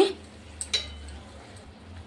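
A single light clink of a kitchen utensil about three quarters of a second in, over a faint steady low hum and hiss.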